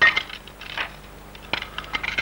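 Glass pane and wooden picture frame being handled as the glass is taken out of the frame: a clink at the start, then a few light clicks and taps.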